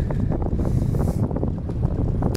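Steady wind noise buffeting the microphone of a camera carried on a moving bicycle, a low rumble.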